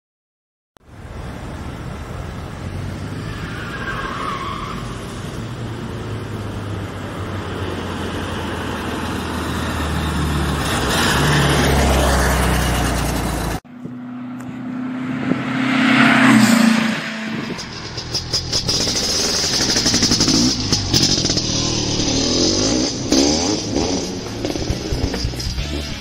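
A motor engine running and building steadily in loudness, cut off suddenly about halfway. It is followed by more engine sound with a brief sweeping rush, mixed with music.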